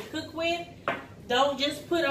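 A woman talking, with one sharp clink or knock on the table about halfway through.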